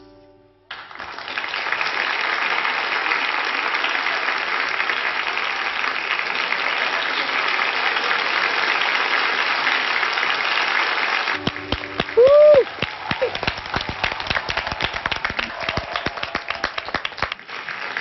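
Studio audience applauding at the end of a song, the clapping swelling in about a second in and holding steady. At about 11 seconds it thins to scattered separate claps, with a brief pitched cry over them.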